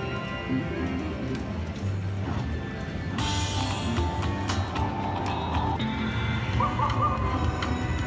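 Aristocrat Timber Wolf Deluxe slot machine playing its bonus music and electronic jingles as the bonus wheel gives way to the free-games feature, over a steady low casino hum. There is a brighter burst of sound about three seconds in.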